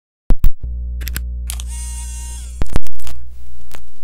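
Turntable start-up sound effects: a few sharp switch clicks and a steady low motor hum, with a tone that rises and then holds. Past the middle come two heavy thumps, then a hiss that slowly fades.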